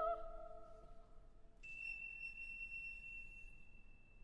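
A soprano's held note ends and dies away over about a second. About a second and a half in, a thin, steady, high-pitched tone starts and holds, faint.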